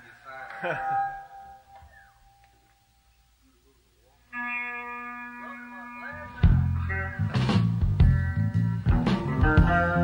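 Studio session tape of a rock band starting a take: a bit of talk, a short pause, then a held electric chord about four seconds in. About six seconds in the full rhythm section comes in with drums, bass and guitar.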